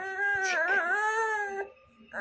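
A toddler's long, wavering whine, held for under two seconds and breaking off shortly before the end.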